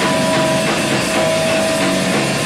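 Live rock band playing loud distorted electric guitar with drums, a long high note held steady over the chords.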